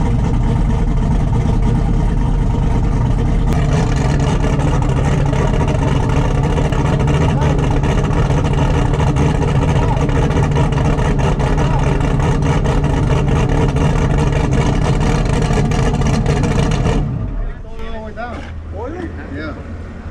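Twin-turbo LSX V8 of a drag-race Chevy Silverado running loud and steady, heard from inside the cab, then shut off about seventeen seconds in. It is being shut down because its oil pressure sensor has burst internally and is leaking oil.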